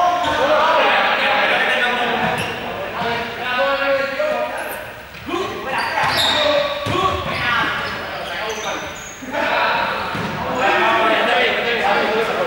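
Several voices shouting and calling at once while balls bounce and smack on the hard sports-hall floor, all echoing in the large hall.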